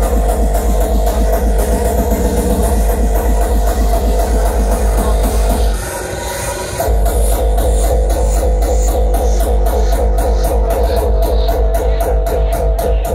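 Terrorcore DJ set played loud over a festival sound system: a fast kick drum under a sustained mid-range synth tone. About halfway through, the kick drops out for roughly a second, then comes back in.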